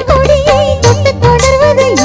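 Live stage orchestra playing a Tamil film song: a wavering, bending melody line carried over steady bass and percussion.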